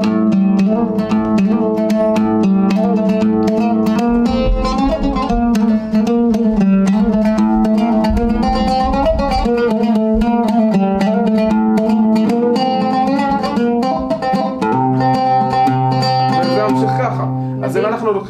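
Oud played solo: a dance tune in the maqam called the sad one, in quick plucked notes. The playing stops about a second before the end.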